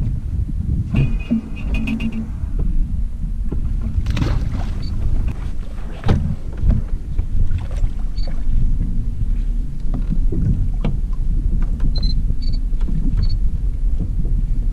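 Wind rumbling on the microphone aboard a small fishing boat, with water lapping at the hull and scattered light knocks.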